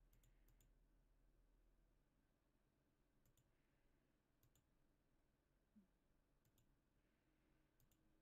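Near silence with faint computer mouse clicks, each a quick press-and-release pair, about five times over a low room hum.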